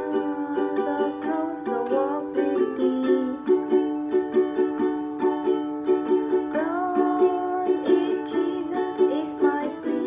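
Ukulele strummed in a steady down, down, up, up, down, up pattern, changing chords a few times in the first few seconds.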